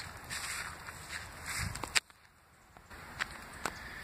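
Footsteps on dirt ground. A sharp click about halfway through, after which it goes much quieter, with a few faint ticks.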